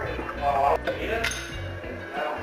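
Background music, with a couple of light metal clinks as a brass adapter is screwed into the neck of a paintball air cylinder.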